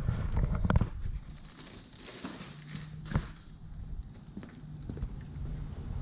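Plastic water bottles being set into a hard plastic cooler: a few hollow knocks and clunks at uneven intervals, the sharpest about three seconds in.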